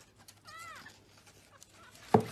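A young kitten mewing faintly: one short, high call that rises and falls, about half a second in.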